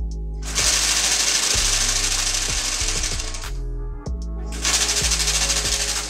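DIY split-flap display modules flipping their flaps, a rapid clatter of flaps snapping over in two long runs: from about half a second in to about three and a half seconds, and again from about four and a half seconds to the end. Background music plays under it.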